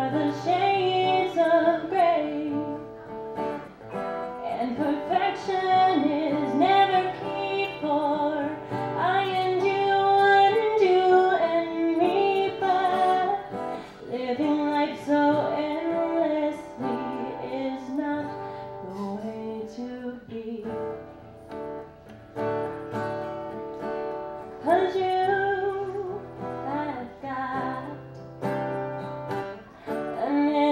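A woman singing, accompanying herself on acoustic guitar.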